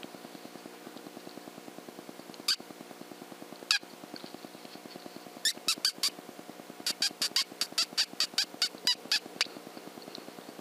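High, sharp squeaks from a predator call imitating a rodent, used to draw in or stop a coyote: two single squeaks, then a quick run of four and a longer run of about a dozen, about five a second. A faint steady hum lies under them.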